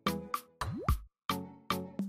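Outro background music with a beat of short, sharply struck notes; about halfway through, a quick rising pitch swoop.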